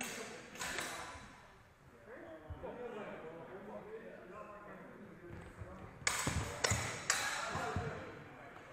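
Steel longsword blades clashing in sparring: a couple of sharp clashes at the start, then a quick flurry of three or four loud clashes about six to seven and a half seconds in, over hall chatter.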